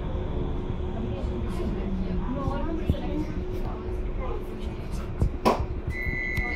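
Bombardier M5000 light-rail tram heard from the driver's cab: a steady low running rumble with a faint hum, muffled passenger voices in the background, and one sharp loud click about five and a half seconds in.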